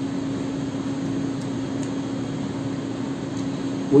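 Steady mechanical hum in a room: one low, unchanging tone over an even hiss, with no pauses or changes.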